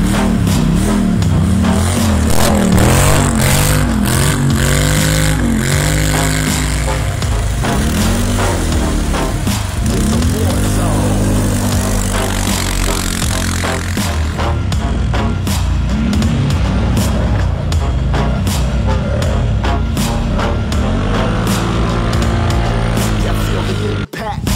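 Quad ATV engines revving up and down again and again as the machines drift through snow, the swoops in pitch coming thickest in the first half.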